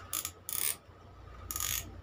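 Plastic clicking and rattling from a Black and Decker steam iron as its controls on the handle are worked by hand, in three short bursts.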